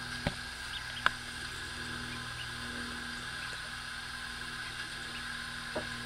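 Steady background hum with a few sharp taps, about a quarter-second in, a second in and near the end, and a few faint high peeps from ducklings.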